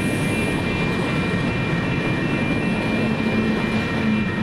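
Double-stack container freight train rolling past a grade crossing: a steady loud rumble with several high-pitched tones held over it.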